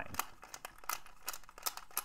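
Combination wheels of a cheap, mostly plastic key lockbox being spun rapidly under the thumbs: a fast, irregular run of small clicks as the wheels are scrambled.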